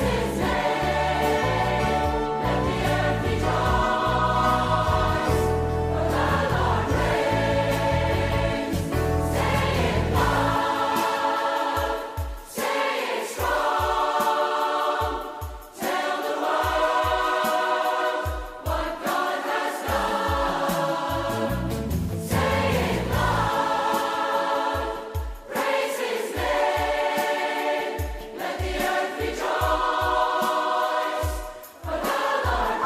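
Congregation singing a praise song with instrumental accompaniment. About ten seconds in, the deep bass drops away, leaving a steady low beat of about two pulses a second under the voices.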